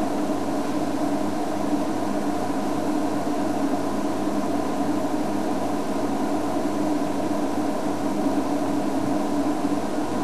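Safari game-drive vehicle's engine running steadily, a constant hum with a few held tones over a noise bed.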